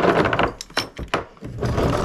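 Folding grapnel anchor and its chain being lifted and handled: several sharp metal knocks and clinks in the first half, then a rattle of handling near the end.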